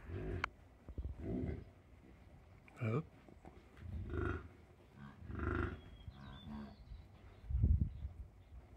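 Bison grunting: a series of short, low grunts, about one a second.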